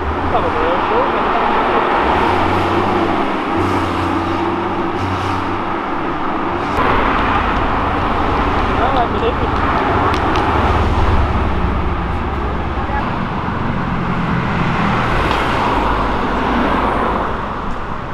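Cars driving past one after another on a street, engines and exhausts running over steady traffic noise, louder for a few seconds from about seven seconds in, with people talking in the background.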